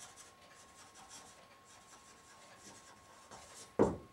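Marker pen writing on a whiteboard: faint, short scratching strokes as a word is written out by hand.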